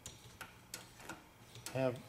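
Light clicks, about three a second, from a VW Beetle shift lever and shift rod assembly with a stock nylon bushing being worked back and forth by hand.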